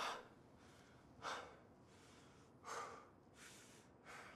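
A man breathing hard from exertion: four short, quick breaths a little over a second apart, faint.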